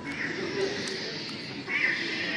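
Electronic sound effects from toy lightsabers being swung and clashed: a buzzing hiss with a louder burst near the end, over crowd chatter.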